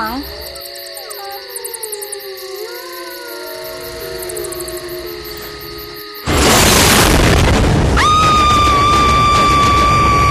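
Horror sound effects and music: wavering, sliding eerie tones, then a sudden loud crash about six seconds in, followed a couple of seconds later by a long, steady high-pitched tone.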